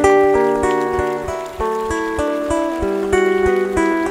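Acoustic guitar played fingerstyle: a picked étude of single melody notes, about three to four a second, ringing over held bass notes.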